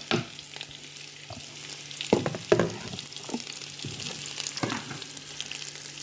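Diced zucchini, onion and garlic sizzling in olive oil in a pot, stirred with a wooden spoon that knocks and scrapes against the pot several times, loudest about two seconds in.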